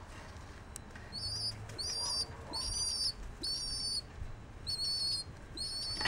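Pigeon chick peeping: about six high-pitched, wavering squeaks, roughly one every 0.7 seconds, starting about a second in.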